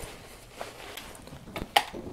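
Quiet handling noise as hands move things about in a packed backpack, with a few sharp clicks and knocks near the end, one louder than the rest.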